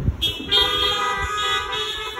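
A brief low thump, then several car horns honking at once as overlapping steady tones of different pitches. They are a drive-in congregation answering "amen" with their horns.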